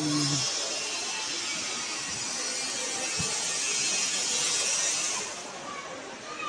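A steady high hiss that fades away about five seconds in.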